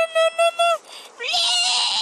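A very high-pitched, squeaky character voice speaking five quick syllables, then, about a second and a half in, a longer raspy high-pitched cry.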